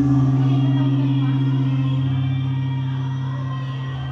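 Traditional ritual music for a temple offering dance: a deep struck note rings out at the start and slowly fades, with fainter melodic instruments above it.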